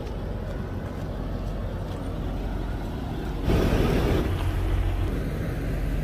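A truck's diesel engine idling steadily, with a short, louder burst of noise about three and a half seconds in.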